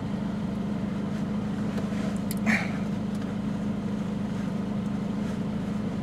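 Steady low hum of a car heard from inside the cabin, with one brief faint sound about two and a half seconds in.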